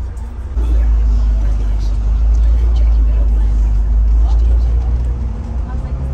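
Deep, steady rumble of a bus's engine and road noise heard from inside the moving bus, growing louder about half a second in as it pulls away.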